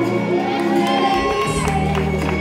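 Slow waltz music playing, with spectators shouting and cheering over it.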